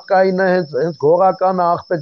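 A man speaking continuously, with a steady high-pitched tone running unbroken underneath his voice.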